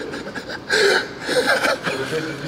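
Men chuckling and snickering: a few short, breathy bursts of laughter.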